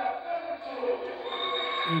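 Indistinct voices mixed with background music, with a thin steady high tone near the end.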